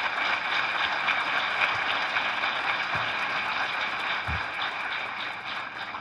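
Audience applauding, a steady patter of many hands that tapers off near the end.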